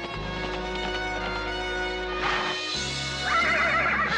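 Background music holding sustained chords, with a horse whinnying near the end, a quavering high call over the music.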